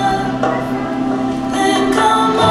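Music with a choir singing long held chords.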